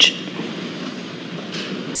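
Steady, even background noise of a large hall, picked up by the podium microphones in a pause between spoken sentences.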